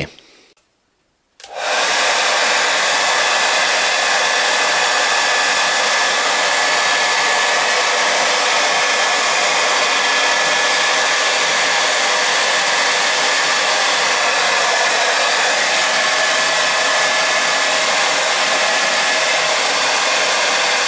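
Handheld hair dryer switching on about a second and a half in, then blowing steadily: an even rush of air with a faint, steady high whine.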